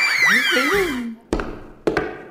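A comedy whistle sound effect: several high whistling tones that each jump up and slide slowly down, overlapping one another, with a voice beneath. Then two sharp knocks about half a second apart.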